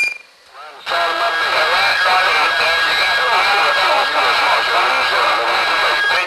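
CB radio receiver on channel 28 bringing in skip: several distant stations transmitting at once, their voices garbled and piled on top of each other under a steady heterodyne whistle, the sign of stations doubling over one another. A short beep at the very start, then about a second of lull before the doubled signals come in.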